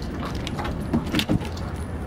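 Boxer-type dog jumping down from a hatchback's boot onto pavement: its metal chain collar jangles and there are a few knocks from the landing, about a second in.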